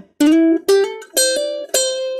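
A ukulele picked one note at a time, about four single notes in a melody line that includes a slide along the fretboard. The last note is left ringing.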